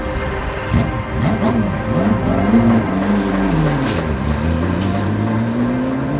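Race car engines revving, the pitch rising and falling several times and climbing again near the end, under background music.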